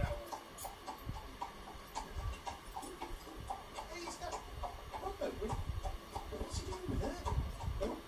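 A desktop 3D printer at work: its stepper motors give short whirring tones that change pitch several times a second as the print head moves over the part, with background speech under it.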